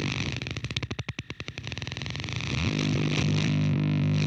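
Electric guitar through fuzz and effects pedals: a distorted droning tone breaks into a rapid stuttering pulse that thins out and drops in level about a second in, then the held fuzz tone swells back.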